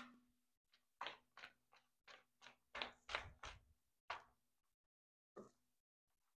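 Faint clicks and taps of a small paint roller being rolled back and forth and knocked on a plate to load it, about a dozen short strokes with a dull thump about three seconds in.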